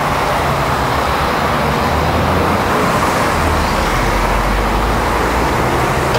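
Steady noise of traffic on a multi-lane highway, with a low engine hum underneath.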